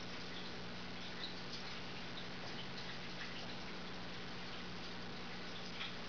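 Faint crunching and small ticks of a cat and a puppy chewing dry puppy kibble from a stainless steel bowl, over a steady low hum.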